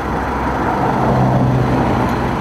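Motor vehicle running: a steady engine hum with a low drone that grows stronger about halfway through.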